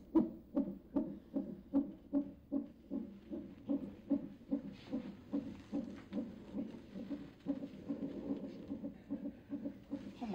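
Fetal heartbeat relayed by an ultrasound/Doppler monitor: a steady pulsing whoosh, about two and a half beats a second.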